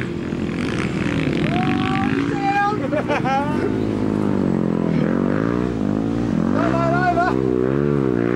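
Off-road dirt bike engines revving hard on a muddy hill climb, the revs rising and falling about once a second as the riders work the throttle for grip in the mud.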